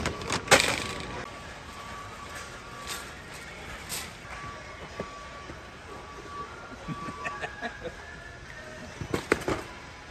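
Shopping handled in a warehouse store: a plastic jerky bag rustled and dropped into a metal shopping cart, with a sharp knock about half a second in. Cardboard snack boxes are then knocked and pulled from a stack, with a run of clicks and clatter near the end. Under it runs steady store background noise and an on-and-off high tone.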